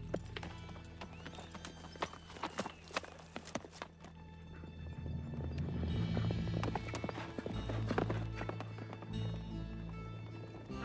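Horses' hooves clattering as two horses set off at a gallop. A film score swells underneath and grows louder from about halfway through.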